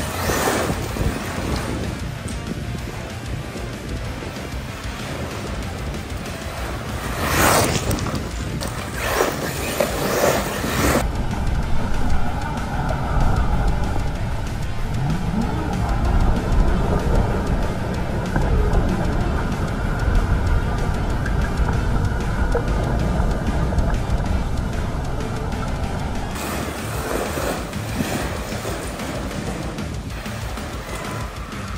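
Background music over an electric RC truck (Arrma Talion) being driven hard on gravel, its brushless motor whining and tyres scrabbling, with two quick passes about seven and ten seconds in.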